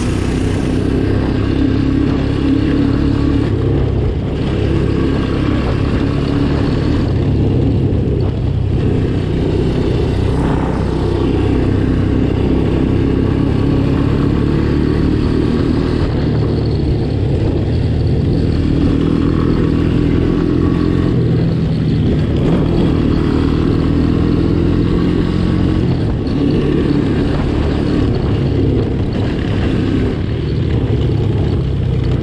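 1985 Honda ATC 200M three-wheeler's single-cylinder four-stroke engine running under way, its pitch rising and falling several times as the rider works the throttle and gears.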